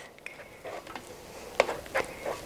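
Faint scraping of a flat scraper pushing thick batter across a perforated plastic Tupperware spaetzle maker set over a pot, with a couple of small sharp clicks late on.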